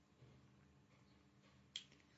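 Near silence with faint room hum, broken by one short, sharp click near the end.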